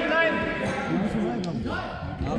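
Men's voices talking and calling out over one another in a large sports hall, with one sharp knock about one and a half seconds in.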